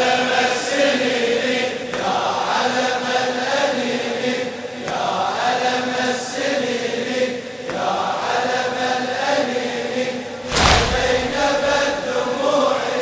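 Latmiyya mourning chant: men's voices singing a slow, drawn-out refrain in unison, with a collective chest-beating strike about every three seconds, the loudest one near the end.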